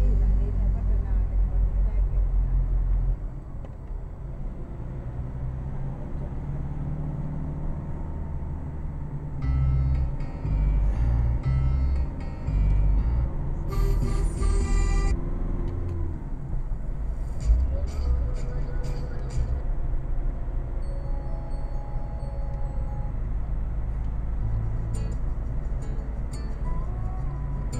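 Low, steady rumble of a car's engine and tyres heard inside the cabin while driving uphill, louder for the first few seconds. Music with singing plays under it.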